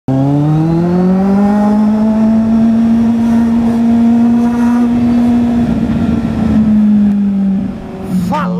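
Kawasaki Z800 inline-four motorcycle engine revving up over the first second or so, then holding a high, steady note under load for several seconds. Wind rush builds near the end, just before the note falls away.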